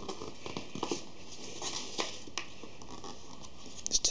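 Thin card being folded and creased by hand: scattered rustles and light taps over a steady background hiss.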